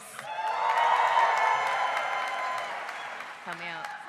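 Audience applauding with some cheering, swelling about a second in and then fading away.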